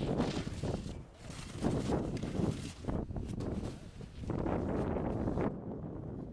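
Ski edges scraping and carving on firm snow as a racer turns through gates, in several surges about a second apart. The sound drops away abruptly near the end.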